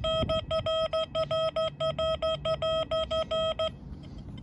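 XP Deus II metal detector's target tone: a run of short beeps at one mid pitch, about four or five a second, stopping shortly before the end. It is signalling a target that reads 86 on the display, an old copper penny.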